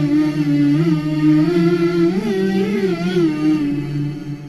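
Outro music: a single male voice chanting long, wavering melodic notes, unaccompanied.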